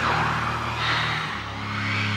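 Hissing static and interference noise from a garbled television transmission, swelling and sweeping up and down, over a low steady hum.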